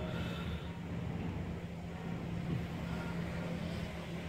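A steady low hum with a rumbling background noise, unchanging throughout.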